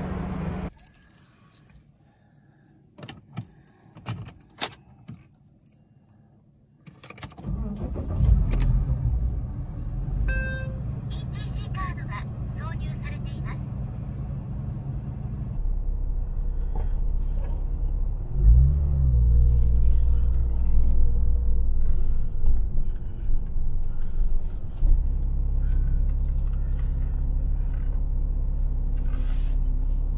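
A few sharp clicks and knocks, then a Porsche Cayman's flat-six engine starts about seven seconds in and keeps running, heard from inside the cabin as the car drives, with a brief rise and fall in revs around eighteen seconds.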